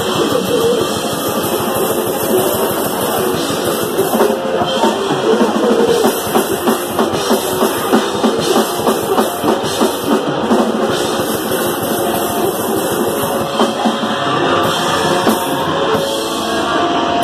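Grindcore band playing live: distorted guitar and bass over fast, heavy drum-kit playing, with a pounding beat through the middle stretch.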